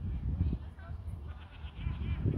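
Volleyball players' voices calling out across the court over a low rumble of wind on the microphone, with a drawn-out, bleat-like call in the second half.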